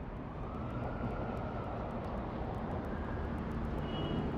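Steady rumble and hiss of city traffic ambience, with a slow rising whoosh in the first second.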